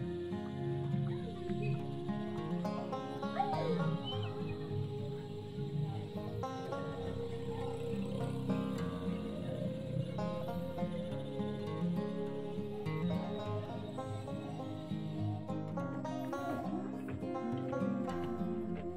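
Background song: guitar accompaniment with a sung vocal line.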